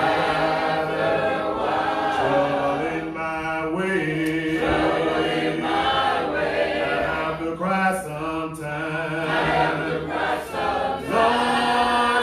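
A congregation singing a hymn a cappella, several voices holding long notes together, with a man leading the singing into a microphone.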